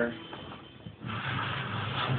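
Faint background speech. It dips quieter for most of the first second, then a low murmur of voice resumes.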